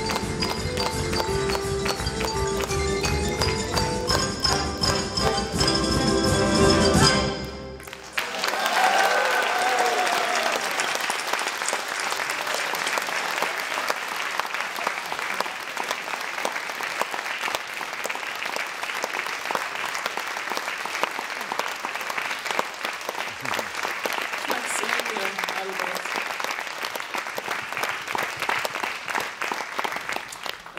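Xylophone solo with a full concert band playing the closing bars, building to a loud final chord that stops sharply about seven seconds in. Applause then breaks out with a few whoops and carries on to the end.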